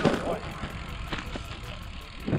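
Low rumble of wind buffeting a handheld camera's microphone outdoors, with camera-handling noise and two light clicks a little over a second in.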